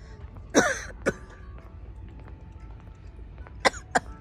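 A person coughing close to the microphone: a loud cough about half a second in, a shorter one soon after, and two more quick coughs near the end.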